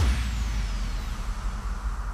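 Fading tail of a closing music hit: a noisy wash with a faint high falling sweep, dying away slowly.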